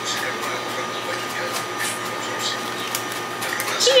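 Room tone of a small food shop: a steady appliance hum with faint scattered clicks and rustles. A voice says "cheers" right at the end.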